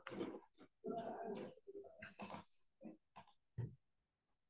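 A faint, muffled voice in short broken snatches, like quiet muttering or grunting, with a few short sharp sounds near the end.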